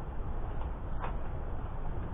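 Steady low rumble of outdoor ambience, with a single faint click about a second in.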